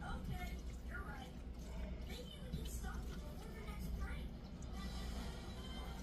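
A television playing faintly in the background, voices and music, over a steady low hum.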